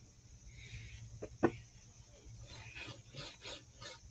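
Faint rubbing of a small paintbrush as paint is worked onto a miniature roombox wall, with two short light taps about a second and a half in.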